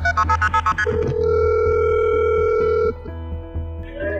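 Telephone ringback tone on a call to 911: one steady ring of about two seconds, after a quick run of short tones in the first second, over a music bed with a low drone.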